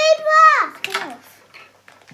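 A girl's long, drawn-out exclamation, one held note that sinks at the end, then a couple of faint clicks about a second in.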